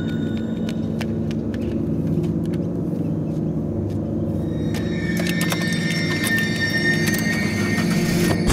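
A low, sustained droning film score, with scattered sharp clicks and mechanical rattles from a car's door handle and door being worked. A higher held tone joins the drone about five seconds in.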